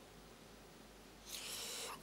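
Near-silent room tone, then a soft hiss for the last second or so.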